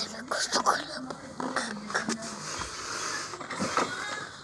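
A girl talking quietly, partly in a whisper, with a few sharp clicks of the phone being handled.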